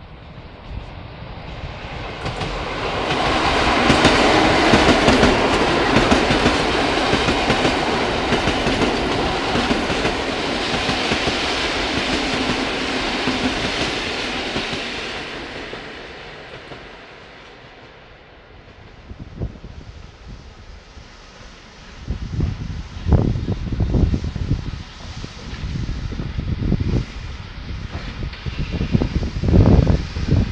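A set of three coupled EN57 electric multiple units passing: a rushing of wheels on rail with a clickety-clack over the joints that builds over the first few seconds, stays loud for about ten seconds, then fades away. In the second half come quieter, uneven low rumbles and knocks.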